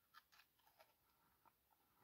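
Near silence, with a few faint soft clicks from someone quietly chewing a bite of a caramel-and-nut chocolate bar.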